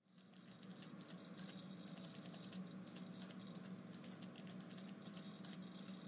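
Faint computer keyboard typing: a quick, irregular run of soft key clicks over a low steady hum of office room tone.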